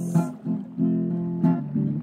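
Acoustic guitar strumming chords, a few strokes that each ring on.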